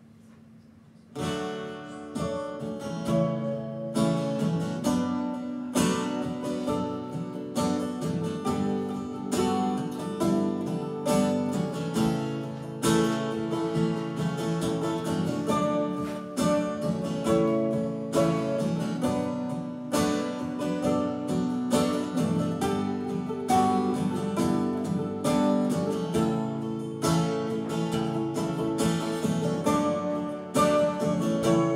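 Acoustic guitar and mandolin playing together without singing. The guitar strums a steady rhythm under picked mandolin notes, starting abruptly about a second in.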